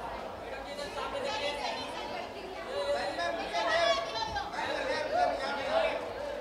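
Chatter: several people talking over one another, with the voices growing louder in the second half.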